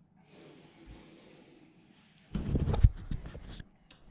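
A faint hiss, then a bit over two seconds in a burst of loud knocks and rubbing, the loudest knock near the end: handling noise as the phone camera is lifted off a stone countertop and held in the hand.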